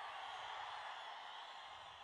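Faint steady background noise of the event hall, slowly fading, in a gap between spoken phrases.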